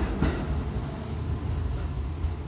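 A departing train running away down the line: a low rumble, with one short click about a quarter second in.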